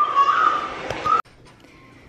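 A toddler's high-pitched squeal, held for about a second and rising at the end, cut off abruptly; quiet room tone after.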